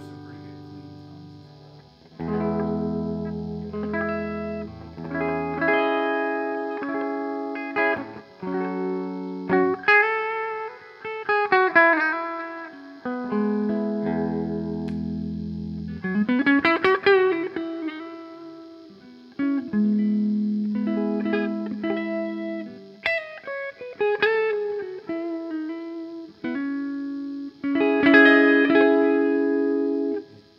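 Tom Anderson Bobcat Special electric guitar with P-90 pickups played through a clean tone: ringing chords and single-note phrases that sustain and fade, with a note bent upward about halfway through.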